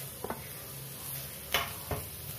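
A spoon scraping and clacking against steel cookware as mashed potato is tipped from a steel plate into a steel kadai: a couple of sharp clacks about a quarter second in and two more near the end.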